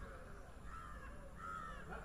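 A bird calling three times in quick succession, short arched calls about two-thirds of a second apart.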